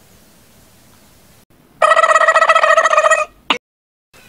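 Faint room tone, then about two seconds in a loud, fast-trilling ring like a telephone bell, lasting about a second and a half and stopping abruptly.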